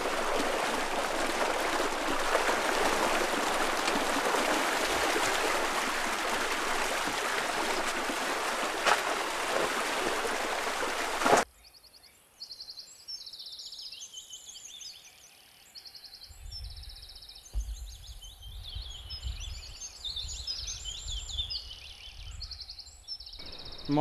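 Water rushing steadily through a small irrigation channel, a loud even rush that cuts off abruptly about eleven seconds in. After it, quieter open-field ambience with repeated short high chirps and, in the last few seconds, a low rumble.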